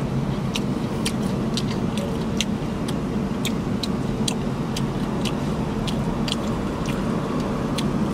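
Close-up chewing of a crispy fried chicken wing: sharp crunches about two or three times a second, over a steady low rumble inside the car.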